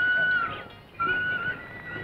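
Film background music: a flute holds a long note that fades out about half a second in. A new phrase starts about a second in and steps up to a higher note.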